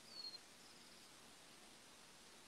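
Near silence: faint outdoor background hiss, with one short, high chirp falling slightly in pitch just after the start and a fainter one soon after.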